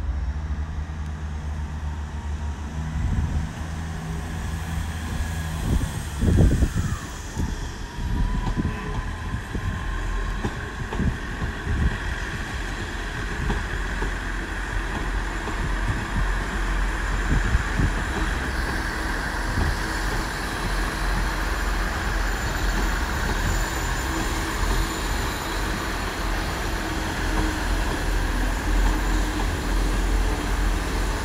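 Double-headed steam locomotives, Royal Scot 46100 and Britannia 70000, running slowly in toward the platform. There is a low rumble with irregular heavy beats, a brief falling tone about seven seconds in, and a steady hiss building from about twelve seconds.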